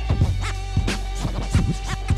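Hip hop beat with a DJ scratching a record back and forth in quick cuts over a steady deep bass line and a held note.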